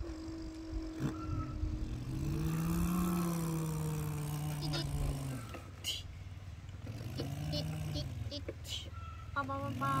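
A person's voice imitating a truck engine: long humming sounds that rise and fall in pitch, with a few short clicks. Near the end, quick repeated beeps imitate a truck horn.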